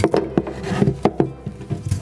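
A quick run of sharp clicks and knocks of hard plastic as a 1½-inch ABS pipe cutter is worked off a freshly cut ABS drain stub.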